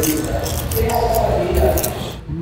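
Crisp fried wonton with a whole-shrimp filling crunching as it is bitten and chewed, with a low hum of voice underneath.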